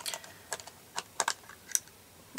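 Light plastic clicks and taps from handling makeup: a face powder compact and brushes being picked up and set down. There are about seven separate clicks over two seconds, irregularly spaced.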